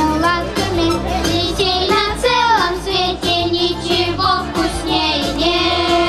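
Children singing a Russian pop song in unison into microphones, amplified through a stage PA over a backing track with a steady bass beat.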